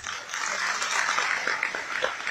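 Audience applause: many hands clapping together, starting abruptly and holding steady.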